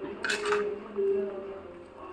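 A metal spatula scraping and clattering against a black kadai while stirring a thick prawn curry, with a brief sharp clatter about a quarter of a second in.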